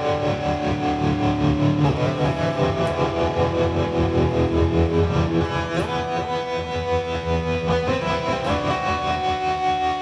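Electric guitar played through a distorted amp tone, a riff of held notes with pitch slides between them.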